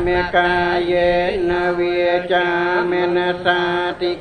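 A Theravada Buddhist monk chanting in Pali into a microphone, long notes held on a nearly steady pitch and broken by short pauses.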